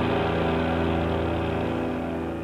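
Rock music from a cassette: a held, distorted low chord rings on and slowly fades away.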